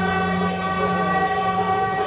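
Beiguan procession band playing: a suona holds one long, steady reed note over cymbal clashes that come about every second.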